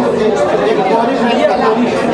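Overlapping chatter of several people talking at once, with no single clear speaker.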